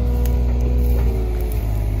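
John Deere 35G compact excavator's diesel engine running steadily under hydraulic load while the bucket swings. A faint whine sinks slightly in pitch about halfway through.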